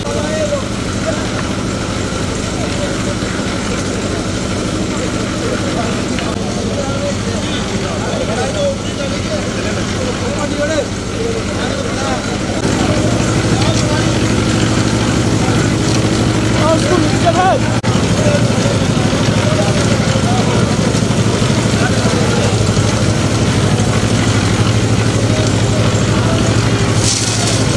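A concrete mixer's engine runs steadily, turning the drum for the slab pour, and gets louder about halfway through. A crowd's chatter mixes with it.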